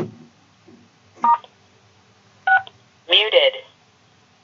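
A knock, then two keypad tones pressed on a cordless phone handset about a second apart, with the tone pairs of star and six, the keypad code for muting and unmuting on a conference call line. A short sound from the phone's speaker with a bending pitch follows near the end.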